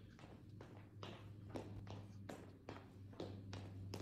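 Light footsteps and shoe taps of two people stepping and turning on a wooden floor, a few each second, over a steady low hum.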